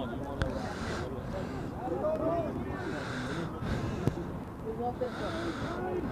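Shouts and calls from footballers and touchline spectators on an outdoor pitch during play, with a couple of sharp knocks, one near the start and one about four seconds in.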